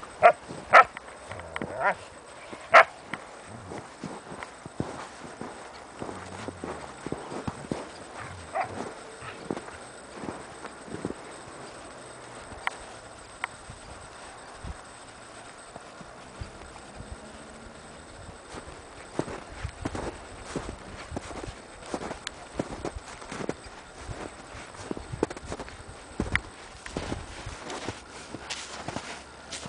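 A dog barking a few sharp times in the first three seconds while playing with a foal, then the irregular steps of horses' hooves in snow, growing closer and busier in the second half.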